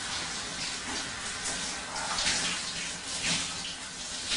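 A shower running in a shower cubicle: water spray hissing and splashing unevenly as it falls on a person under it.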